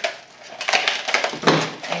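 Scissors snipping and crunching through a hardened, dried papier-mâché shell. It is a quick run of crisp cuts that starts about half a second in.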